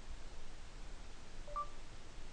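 Android phone's voice-input ready tone: a brief, faint two-note rising beep about one and a half seconds in, signalling that the microphone has started listening for dictation.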